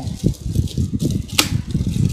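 Hands working at the wrapping paper and ribbon of a large gift box: irregular rustling and scuffing, with one short sharp crack about one and a half seconds in.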